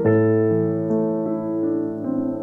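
Nord Stage digital piano played with a piano sound: an A octave struck in both hands, with a low A held under it. Single notes are added about every half second in a simple arpeggio.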